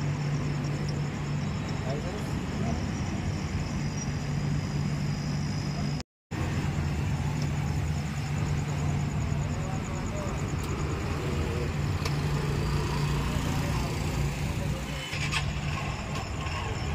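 Street traffic and nearby motorbikes running under a steady low hum, with indistinct voices in the background. The sound drops out completely for a moment about six seconds in.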